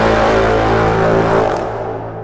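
Intro music sting: a loud, held chord with a deep bass. About one and a half seconds in it begins to die away.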